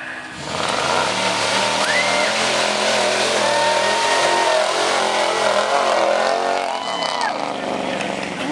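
Pickup truck's engine revving hard and held at high rpm as the truck drives through a mud pit. The engine comes up about half a second in, stays loud and steady, and drops off near the end.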